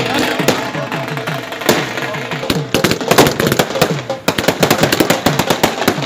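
A string of firecrackers going off in a rapid run of sharp cracks, thickest through the second half, over music with a steady drum beat.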